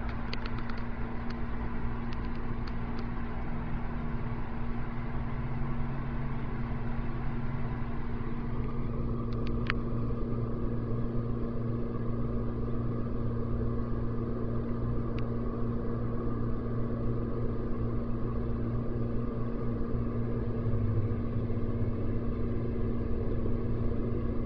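Steady low mechanical hum with a constant tone and rumble beneath it, and a few faint clicks in the first few seconds and again about ten seconds in.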